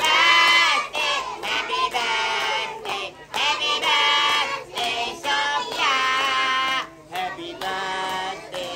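A child singing a birthday song over backing music, phrase after phrase with short breaks between lines, while the party guests clap along.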